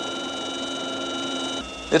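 Steady helicopter cockpit drone: a low hum with several high steady whining tones, like turbine and transmission whine. The whine drops away and the level falls shortly before the end.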